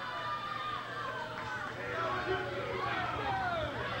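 A small crowd of wrestling fans shouting and jeering at a heel wrestler, many voices overlapping at once.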